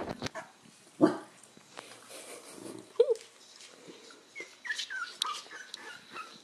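Young corgi puppies whimpering and squeaking: a short yelp about three seconds in, then a run of short, high, falling cries near the end. A loud thump comes about a second in.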